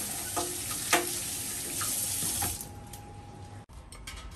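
Kitchen tap running into the sink as green vegetables are rinsed under it, with a few knocks against the sink, one louder than the rest about a second in. The water stops about two and a half seconds in.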